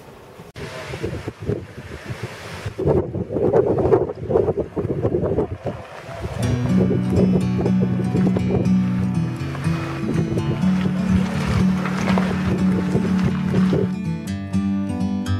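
Rough wind noise buffeting the camera microphone in the rain. About six seconds in, background music with sustained low notes comes in and carries on.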